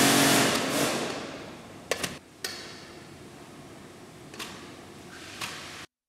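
Punch-down tool (pigeur) forced down into the thick cap of fermenting grape skins and seeds in a wine vat: a loud noisy push that fades over about two seconds, then a few faint knocks.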